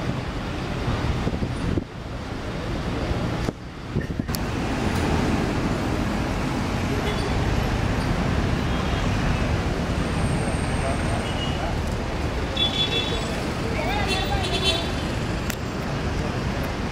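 City street ambience: steady road traffic noise from passing cars and buses, with people's voices in the background.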